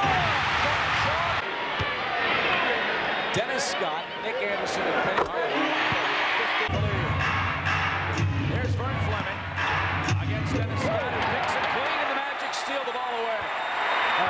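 Arena crowd noise during live basketball play, with a basketball bouncing on the hardwood court.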